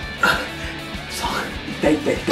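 Background music with a man's short strained vocal cries, the first and loudest just after the start and more near the end.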